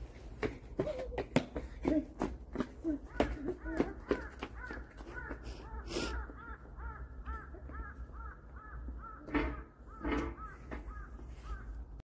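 Footsteps on pavement for the first few seconds, then a bird calling over and over, a short note repeated about three times a second, with two louder sounds near the end.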